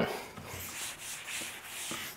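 A handheld eraser is rubbing across a whiteboard, wiping the writing off with a soft, hissing scrub.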